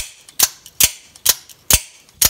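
Out-the-front automatic knife, a titanium-handled Microtech Ultratech copy, fired open and shut over and over with its brass thumb slider: five sharp metallic snaps, about two a second. The action is light, so it can be clicked rapidly without tiring the thumb.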